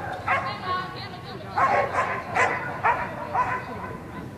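A dog barking repeatedly, a string of short, high barks about every half second.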